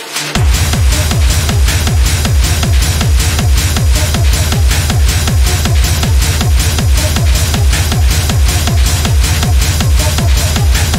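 Techno track in a DJ mix: a fast, driving beat with hi-hats, where a deep kick drum drops back in just after the start and then runs on in a steady four-on-the-floor pulse.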